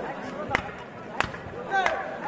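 Two sharp slaps about two thirds of a second apart, then a short, falling call from a man's voice near the end.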